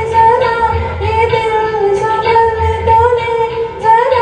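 A woman singing a solo melody into a handheld microphone, holding each note with small bends in pitch.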